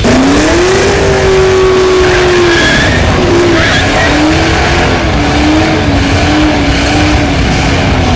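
Ford Mustang engine revving up in the first second and held at high revs, its pitch wavering slightly, while the rear tyres spin and squeal in a smoky burnout.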